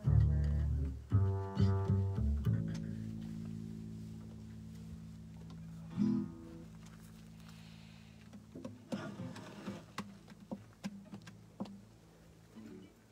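Upright double bass plucked several times, its low notes left ringing and slowly fading, with one more pluck about halfway through. Softer scattered plucks of acoustic guitar strings follow near the end.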